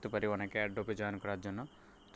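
A man speaking, with a short pause near the end.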